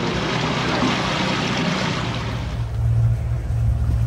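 Sea water rushing and splashing in a sailing yacht's wake behind the stern. Past the halfway point the hiss of the water fades and a low rumble grows louder.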